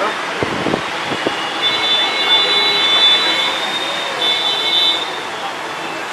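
Crowded street-food stall ambience with background voices chattering and a few short knocks early on, and a steady high-pitched tone held for about three seconds from about two seconds in.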